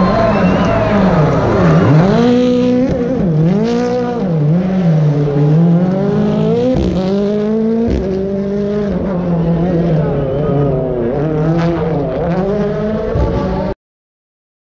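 Rally car engine revving hard and dropping back again and again, its pitch rising and falling steeply many times. The sound cuts off suddenly near the end.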